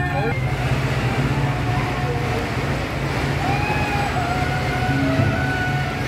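Engine of a procession vehicle running as it passes close by, over a steady low hum, with people's voices mixed in.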